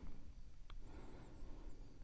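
Quiet room tone with one short, faint click a little before a second in and a faint, thin, high warbling tone shortly after.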